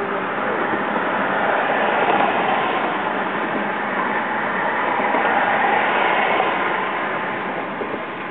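Steady road and wind noise of a car driving, an even rushing that swells slightly twice.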